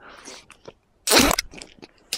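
A person chewing and crunching food close to the microphone: irregular small crackles and clicks, with one louder crunch about a second in.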